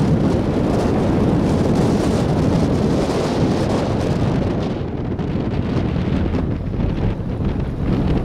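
Loud wind buffeting on the microphone, mixed with the low rumble of a vehicle driving over sand. The upper hiss thins and the level eases slightly about five seconds in.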